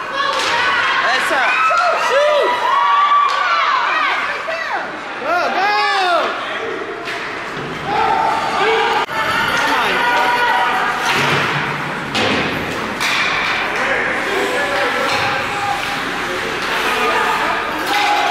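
Ice hockey game play: sharp thuds and slaps of the puck, sticks and players against the boards, over spectators calling and shouting from the stands. The calls come thickest in the first half; the knocks keep coming every second or two.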